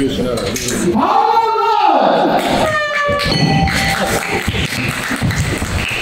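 A long call, then about three seconds in a bell rings briefly: the bell starting the second round of an MMA bout. It rings over steady crowd noise and shouting voices.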